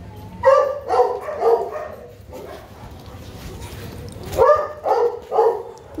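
Several small dogs barking in short yaps: a run of about four barks in the first second and a half, and another run of about three near the end.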